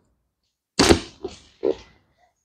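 A man's short grunts, three in quick succession beginning about a second in, the first the loudest, as his bent leg and hip are worked in a chiropractic manipulation.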